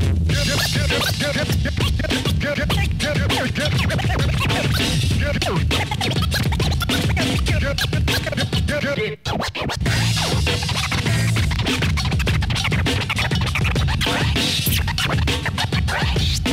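Turntablist scratching records on Technics turntables through a Rane mixer over a hip-hop beat, in quick chopped strokes. The sound cuts out sharply for a moment about nine seconds in, then the routine carries on.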